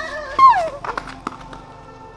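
A single loud howl about half a second in, falling in pitch, followed by faint steady held tones.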